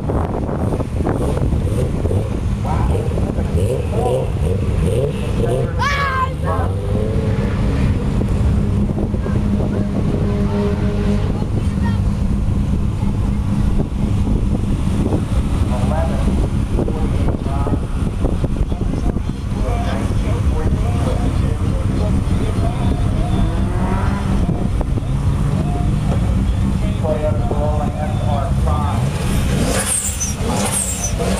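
A car engine idling steadily, with voices talking in the background.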